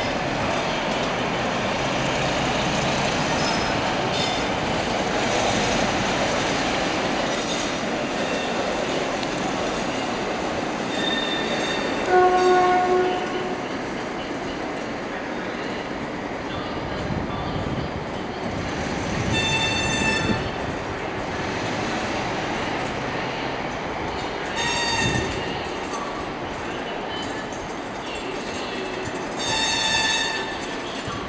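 A slow-moving passenger train of vintage coaches hauled by Class 47 diesel D1755 rolls steadily through the station pointwork, its wheels clacking and rumbling. About twelve seconds in comes a short, loud horn-like blast. High-pitched wheel-flange squeals come at about twenty and twenty-five seconds and again near the end.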